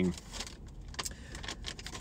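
Paper fast-food bag being handled: scattered crinkles and rustles as it is opened and reached into.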